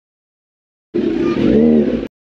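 About a second of dead silence, then a Kawasaki Z900's inline-four engine revving for about a second, its pitch rising and falling.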